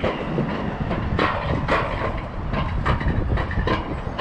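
Alpine coaster sled running along its metal rail track: a steady low rumble with repeated clacks from the wheels on the rails.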